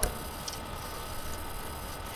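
Steady low hiss and hum of a desk microphone's background noise, with one short click right at the start.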